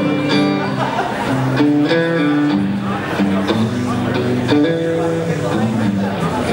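Solo electric guitar played live through an amplifier, a line of sustained notes and chords changing about every half second.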